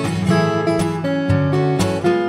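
Steel-string acoustic guitar played fingerstyle with a capo: a picked melody over bass notes and chords, with percussive slaps on the strings.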